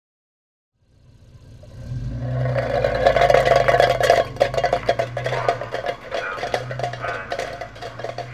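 An old Volvo car's engine running, fading in over the first two seconds and holding steady. Over it comes an irregular clattering of tin cans tied behind the car.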